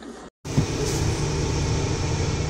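Steady low rumble inside a semi-truck cab, starting abruptly after a short silent gap, with a single sharp knock just after it begins.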